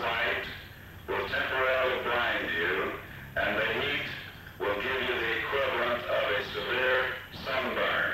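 A man's voice making announcements over a public-address loudspeaker, in phrases of one to three seconds with short pauses between them.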